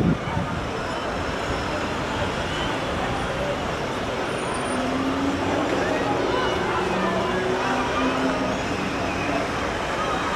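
Steady street traffic: cars passing through an intersection, engines and tyre noise blending into a constant hum, with a faint engine drone rising out of it from about halfway through.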